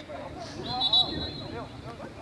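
A referee's whistle blown in one long, steady, high blast that starts about half a second in, over faint distant shouts from players and spectators.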